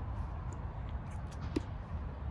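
Steady low rumble of an urban outdoor background, with one short sound about one and a half seconds in.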